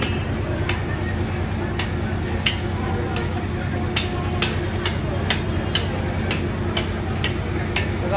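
Sharp knocks and clicks, irregular and a few a second, coming closer together in the second half, over a steady low hum of the shop.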